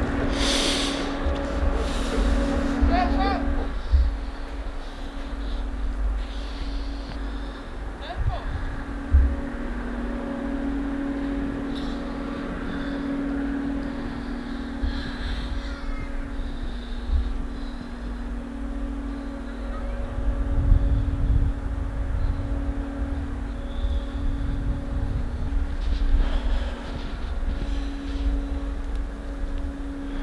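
Outdoor rumble buffeting a handheld camera's microphone, irregular and gusting, with a couple of handling knocks, over a steady low hum.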